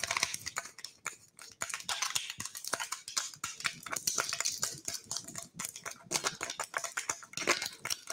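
Plastic supplement bottle being handled while its cap is worked at with long fingernails: a run of irregular small clicks and scratches.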